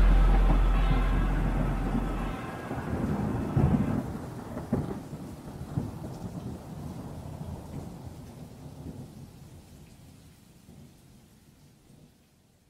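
Rain and rolling thunder fading out at the end of a song, with a couple of sharper cracks around three and a half and five seconds in. A deep held bass note from the song dies away about two seconds in.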